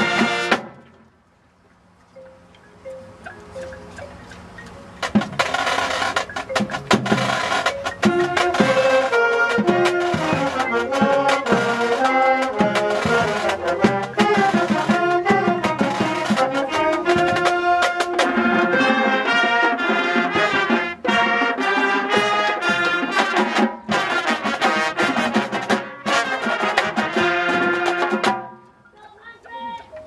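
High school marching band playing, brass with drums: a held chord cuts off right at the start, a soft passage follows, then the full band comes in about five seconds in and plays until it stops near the end.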